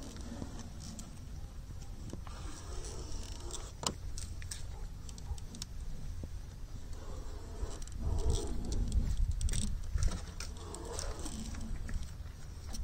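Faint rubbing and light tapping of fingertips pressing a vinyl overlay down onto a plastic grille bar, with one sharp click about four seconds in, over a low rumble that grows louder for a couple of seconds near the end.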